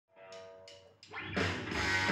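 Rock music played back from a vinyl record through hi-fi loudspeakers. It opens quietly with a held electric guitar chord and a few light cymbal-like strikes, then the full band comes in loud about a second and a half in.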